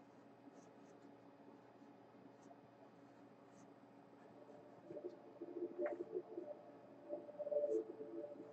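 Pencil sketching on a stretched canvas: faint scratching strokes. About five seconds in, a louder, pitched sound comes in and keeps going.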